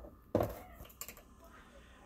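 A knock followed by a few light clicks: a metal measuring spoon against a glass mixing bowl as ground black pepper is spooned in.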